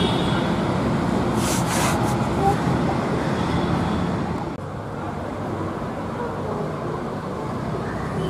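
Street ambience of steady road traffic with faint voices of people mixed in. The sound dips sharply about halfway through and then carries on a little quieter.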